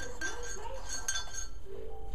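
A metal spoon clinking against a cup while coffee is stirred, a few short bright clinks with a brief ring.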